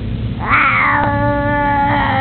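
Baby vocalizing with a bottle in its mouth: one long whine that rises at first, then holds a steady pitch for about a second and a half.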